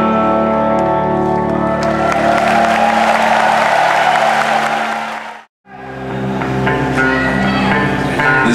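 Electric guitars sounding sustained, ringing chords as a band plays live, with crowd applause and cheering swelling over them. The sound fades and drops out completely for a moment a little past halfway, then the electric guitars start ringing again.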